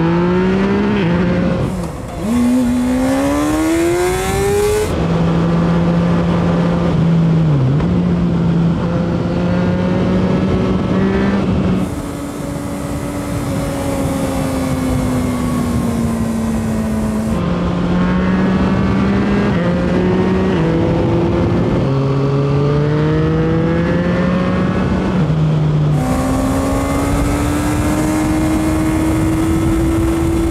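Motorcycle engines heard from on board while riding. The pitch climbs under acceleration and drops in steps at each gear change, with wind hiss in some stretches.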